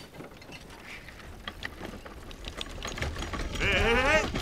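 Wooden cart with wooden-spoked wheels rattling and clattering as it is pushed over rough grass, growing louder with a rising rumble. Near the end a person's whooping, laughing shout rises over it.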